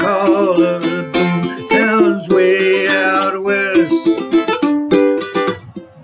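A ukulele being strummed as song accompaniment, with a man's singing voice over it, softening briefly near the end.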